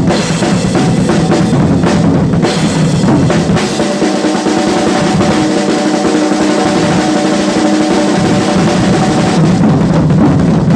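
Drum kit played fast and hard, a Pearl snare drum and bass drum hit in a dense, unbroken run with cymbals. Under the drums, a steady ringing tone holds from about three seconds in until near the end.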